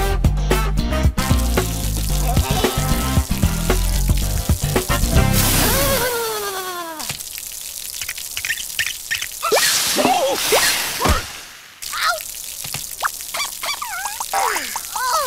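Cartoon background music with a stepped bass line, ending about six seconds in with a falling whistle-like glide. Then cartoon sound effects of water trickling and dripping from a leaking bug character, with a few short gliding squeaks.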